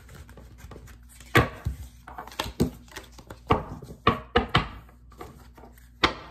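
Tarot cards being handled and set down on a wooden desk: a string of irregular sharp taps and knocks.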